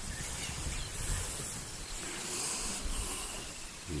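Outdoor bush ambience: a steady high insect hiss with a low rumble underneath, and a short low sound near the end.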